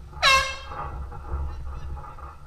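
One short air-horn blast, a single loud pitched honk about a quarter of a second in, signalling the start of the round.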